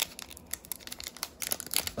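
Foil booster-pack wrapper crinkling and tearing in irregular crackles as fingers work it open. The wrapper is tough to open.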